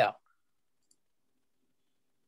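A short spoken "yeah" at the very start, then near silence with one faint click about a second in.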